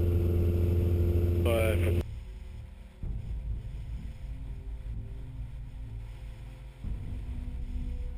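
Light aircraft's engine and propeller droning steadily in the cabin, with a brief voice near the end of the drone. About two seconds in, it cuts off suddenly to quiet, soft music with long held notes over a faint low rumble.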